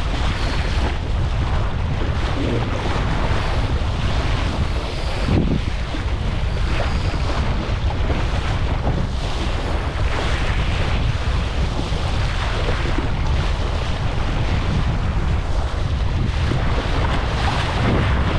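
Wind buffeting a deck-mounted action camera's microphone, with water rushing and splashing past the hull of a Laser dinghy sailing fast in a fresh breeze. The sound is a steady, heavy rush with occasional louder splashes.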